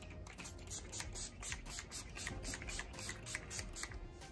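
Urban Decay All Nighter setting spray pumped onto the face in a rapid series of short mist hisses, about five a second.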